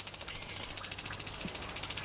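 Faint steady background hum and hiss, with no clear single event.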